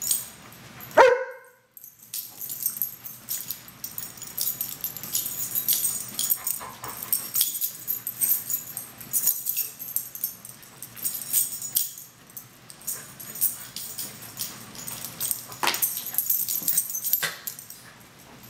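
Dogs playing rough: one sharp bark about a second in, then scuffling with collar tags jingling in quick, scattered clinks and a few small yips.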